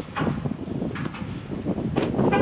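Wind buffeting the microphone, with rustling and a few light knocks as a person climbs out of a car's open driver's door.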